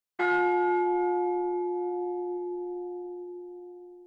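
A single bell stroke, struck once and left to ring, its tone slowly dying away over about four seconds.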